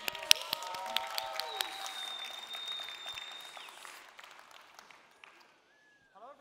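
Audience applauding, with sharp individual claps at first, dying away over about five seconds.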